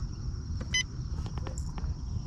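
A single short electronic beep from a Humminbird Helix 7 fish finder's keypad as a button is pressed to change screens, about three-quarters of a second in, over a steady low rumble.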